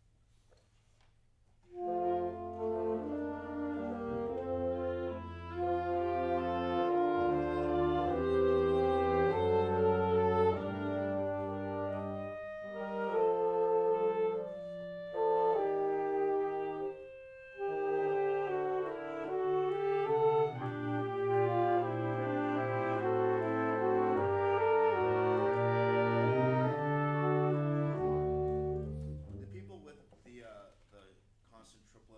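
A small wind ensemble playing a passage of music, coming in about two seconds in, with a brief break a little past the middle, and stopping about a second before the end.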